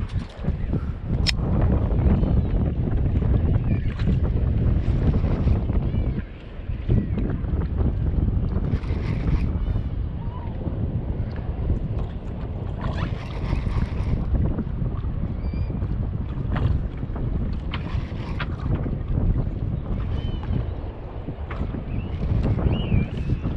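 Wind buffeting the microphone on a small boat at sea: a steady low rumble, with brief hissy bursts now and then and a single sharp click about a second in.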